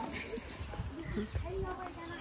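Indistinct voices of people talking, with footsteps on a gravel path.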